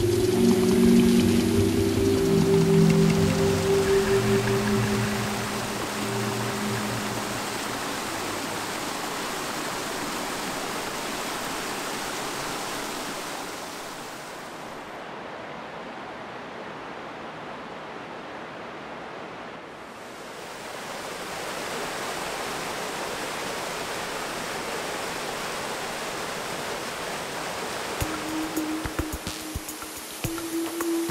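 Background music with long low notes fades out over the first several seconds into the steady rush of a mountain stream. The water sounds duller for a few seconds around the middle, and music comes back in near the end.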